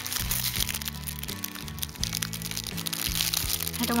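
Background music with slow held chords, over the crackle and crinkle of tissue paper and washi tape being carefully peeled and handled.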